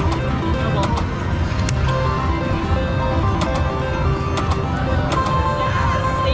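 Three-reel slot machine playing its electronic tones and jingle over steady casino-floor noise, with a few sharp clicks as the reels stop. About five seconds in a new steady tone starts: the win rollup sound as a line win is counted into the credits.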